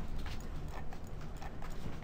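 A few light, irregular clicks over a steady low hum.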